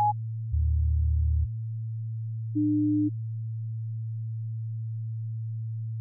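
Sparse electronic music made of pure sine-wave tones: a steady low drone, with a lower note held for about a second starting half a second in and a short higher note about two and a half seconds in.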